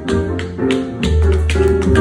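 Tap dancing on a wooden board: a quick, uneven run of sharp tap strikes over a live acoustic piano and upright bass.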